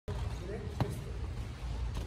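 A single sharp thud about a second in, over a low steady rumble, with faint voices.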